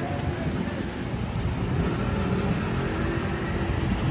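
City street traffic: a car engine running as vehicles pass, over a steady wash of road noise.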